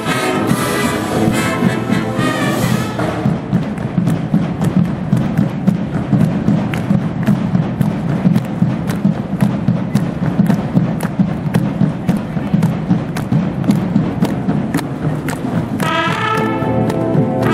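Marching band music: the brass section plays for about three seconds, then drops out for a drum break. The percussion section keeps up a steady beat of drum strikes until the brass comes back in at the very end.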